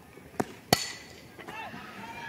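A softball bat cracking against a pitched ball: two sharp knocks about a third of a second apart, the second much louder. Low ballpark crowd noise runs underneath.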